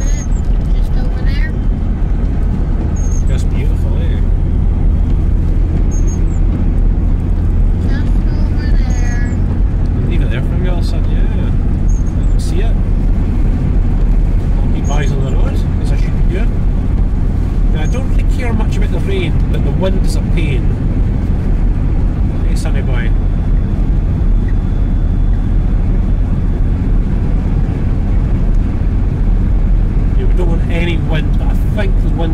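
Land Rover Discovery 2 cruising on the open road, heard from inside the cabin: a steady low rumble of engine and tyre noise.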